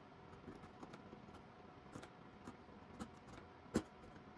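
Small sharp chisel nicking and scraping into walnut as fine carved detail is cut by hand: a string of faint ticks and short scrapes, with one sharper click near the end.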